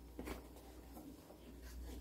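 Faint rustling of a cloth play mat being unfolded and handled, with a soft brushing noise about a quarter second in.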